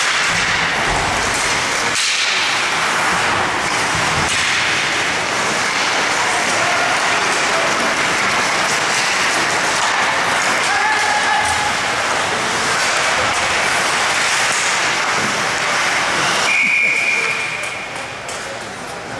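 Steady crowd noise from spectators in an ice hockey rink, a dense wash of voices and shouting over the play. Near the end a single steady whistle note sounds for about a second, a referee's whistle stopping play.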